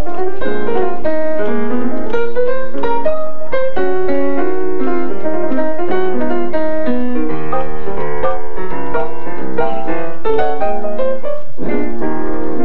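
Grand piano played live, a busy stream of quick notes and chords that goes on without a break.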